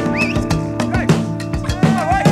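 Progressive rock band recording playing: steady bass and guitar notes with drum hits, and a few sliding high notes on top.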